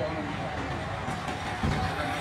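Night street ambience with people talking as they pass, over a steady low hum of city noise.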